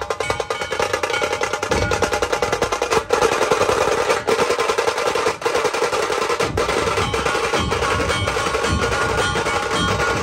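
Dhol-tasha ensemble playing loud and fast: tashas rattle in a dense roll of rapid stick strokes over recurring deep dhol beats.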